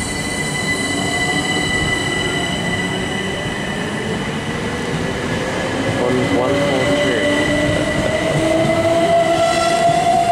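A Class 377 Electrostar electric multiple unit accelerating past the platform. Its electric traction whine rises steadily in pitch as it gathers speed, over the rumble of wheels on rail and steady high-pitched tones. The sound grows louder from about halfway through.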